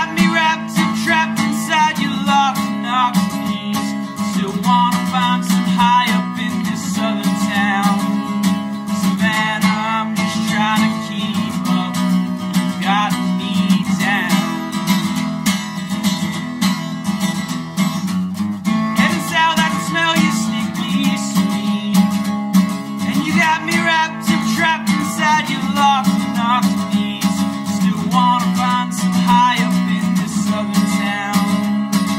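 A steel-string acoustic guitar strummed steadily in a solo live performance, with a man's voice singing over it in several stretches.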